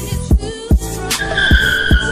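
A car's tires squeal for about a second, starting a little past halfway, as a Chevrolet Camaro pulls away. The squeal sits over a music track with a heavy drum beat.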